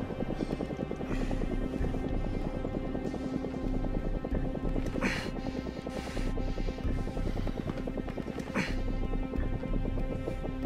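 Tense film score: a fast, pulsing rhythm over held low notes. Two brief noisy swells cut through it, about five seconds in and again near the end.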